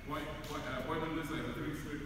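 Indistinct talking of several voices in a large gym, with no clear words.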